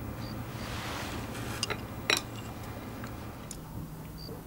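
Chopsticks and dishes clinking at a meal table: a few light clicks, then one sharper clink about two seconds in, and faint clicks near the end.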